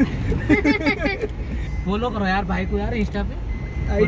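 Men's voices talking and laughing inside a moving car's cabin, over the steady low rumble of the engine and road.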